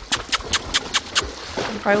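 Horse wading through a reservoir under its rider: an even run of short splashes about five a second, which stops a little past a second in.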